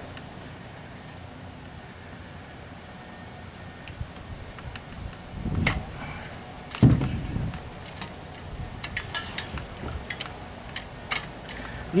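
Scattered small metallic clicks and clinks, with two dull thumps around the middle, the louder one second, as the valves on two pressurized two-part spray foam tanks are opened fully and the hose and dispensing gun are handled.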